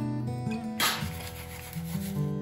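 Fingers rubbing and pressing dry breadcrumbs onto chicken cutlets in a metal baking tray: a dry scraping rustle begins about a second in and fades within a second.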